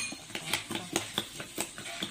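Metal spoon beating raw eggs in a ceramic bowl, clinking against the bowl about four times a second.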